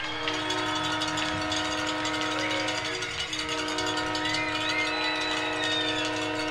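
Arena goal horn blaring a steady chord of several tones right after a home goal, holding for about six seconds over crowd noise.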